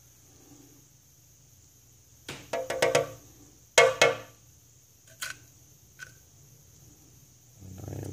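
Metal tweezers tapping and clinking against a container: two clusters of quick clicks, each with a short ringing tone, a little over two seconds in and about four seconds in, the second the loudest, then two faint single clicks.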